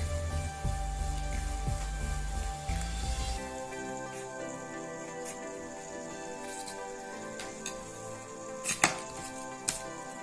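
Background music, with a few short, sharp snips of scissors cutting thin cardboard in the second half; the two loudest come near the end.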